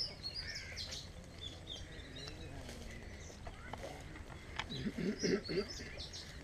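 Small birds chirping and calling with short, high notes over open rice paddies, over a steady low rumble. About five seconds in comes a brief, louder burst of lower, wavering sound.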